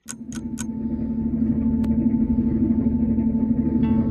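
Clock-ticking transition sound effect: a quick run of ticks, about seven a second, for the first half-second, then a low steady drone that swells in loudness, with a single sharp click about two seconds in.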